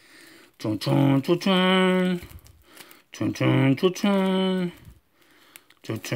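A man singing a wordless tune to himself in two phrases, each ending on a long held note.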